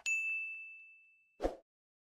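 A single bright, bell-like ding from a notification-bell sound effect, ringing on one high tone and fading away over about a second and a half. A short thump follows near the end.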